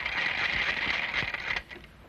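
Telephone bell ringing in a rapid, continuous trill for about a second and a half, then stopping.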